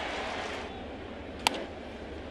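Ballpark crowd murmur, with one sharp crack about one and a half seconds in: a bat hitting a pitched baseball on a ground ball.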